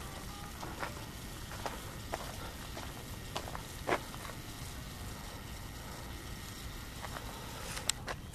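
Quiet outdoor hilltop ambience, a faint steady hiss, with a few soft clicks and ticks from the handheld camera being moved and zoomed, the most distinct about four seconds in.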